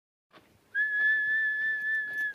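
A single high whistle held on one steady note for about a second and a half, starting under a second in.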